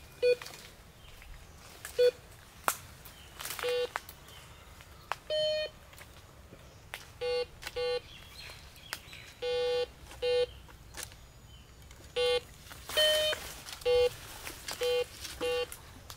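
Metal detector giving about a dozen short beeps at irregular intervals, most on one mid pitch and a couple slightly higher and longer. These are its target signals as the coil passes over metal. A few sharp clicks fall between the beeps.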